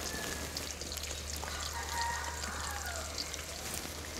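Herbal hair oil with hibiscus leaves sizzling quietly in a steel pot, a faint steady crackle. A chicken calls in the background from about a second and a half in, one drawn-out call lasting over a second.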